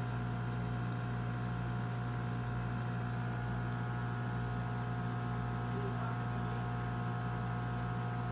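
A steady low hum that holds an even level and pitch throughout.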